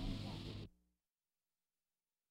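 Violin and piano holding a final chord under heavy recording hiss, cut off abruptly under a second in, followed by silence.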